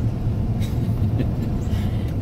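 Steady engine and road noise of a moving car, heard inside the cabin.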